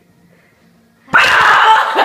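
A person's sudden loud, harsh shout about a second in, lasting just under a second after a quiet start.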